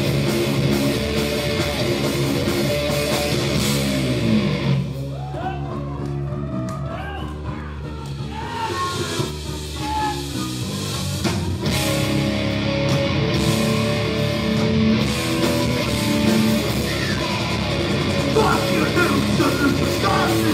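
Live heavy hardcore/crossover thrash metal band playing: distorted electric guitars, bass and drums. About five seconds in the cymbals and drums drop out for a few seconds, leaving a thinner guitar passage with bending notes, before the full band comes back in.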